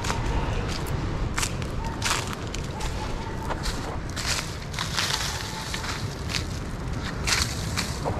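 Footsteps in flip-flops crunching through dry leaf litter and twigs on a forest floor: irregular crackles and snaps every half second or so, over a steady low rumble.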